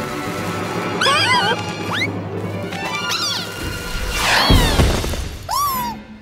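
Cartoon background music with squeaky, wavering character vocalizations. A lit firework fuse hisses at the start, and a short noisy rush comes about four and a half seconds in.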